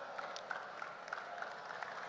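Faint, scattered hand clapping over the low murmur of an indoor crowd.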